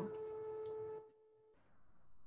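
A steady electronic-sounding tone with overtones, held for about a second and then cutting off, followed by near silence and a faint high whine.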